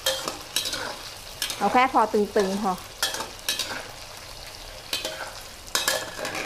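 Diced tofu deep-frying in oil in a metal wok, a steady sizzle, with a metal ladle knocking and scraping against the wok several times as the cubes are stirred. The tofu is just firm on the outside, fried only until set rather than golden and hard.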